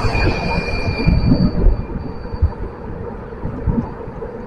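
Road and wind noise from a moving vehicle: an irregular low rumble with gusty buffeting on the microphone, and a thin high whine that fades out about two seconds in.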